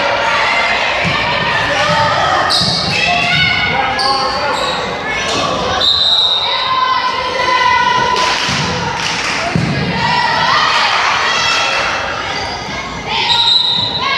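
Players' and spectators' voices and shouts echoing in a school gymnasium, with the thuds of a volleyball bouncing on the hardwood floor and being struck.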